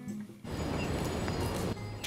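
Background music that cuts off about half a second in, giving way to a steady rush of outdoor city-street noise: traffic and wind on the microphone.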